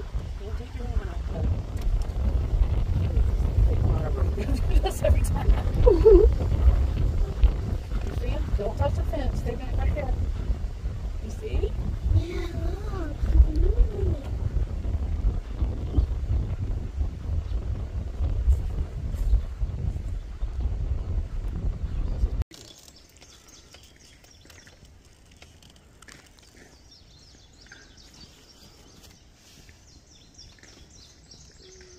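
Wind rumbling on the microphone, with faint voices murmuring under it. About two-thirds of the way through it cuts off abruptly to a quiet background with birds chirping.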